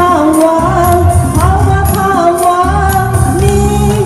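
A woman singing a pop song into a microphone over a karaoke backing track with a steady low beat; the bass drops out briefly twice.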